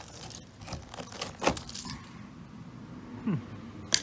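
Rust-rotted steel quarter panel of a VG Valiant crackling and tearing as a hand breaks corroded metal and rust scale away, with scattered snaps of flaking rust. A short falling sound comes just past three seconds, and a sharp crack comes at the very end.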